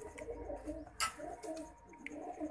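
Domestic pigeons cooing, a low warbling coo that runs on steadily, with one sharp click about a second in.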